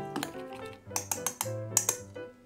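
Light background music, with a metal balloon whisk clicking and tapping against a glass bowl as it beats thin tempura batter, a few sharp clicks about a second in and again near the end.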